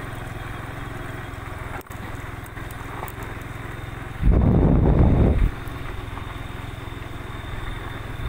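Steady low hum of a running engine, with a loud rumbling burst about four seconds in that lasts just over a second.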